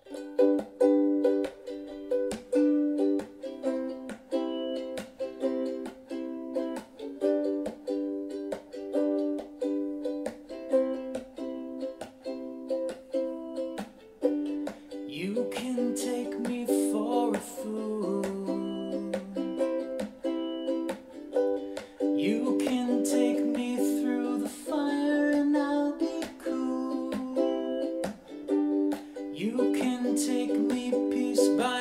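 Ukulele strummed in a steady rhythm, starting suddenly from silence, in a small room. About halfway in, a man's wordless vocal joins the strumming.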